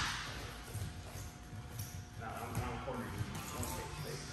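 The echo of a kick landing on focus mitts dies away at the start, followed by quiet room noise in the gym and faint voices from about halfway through.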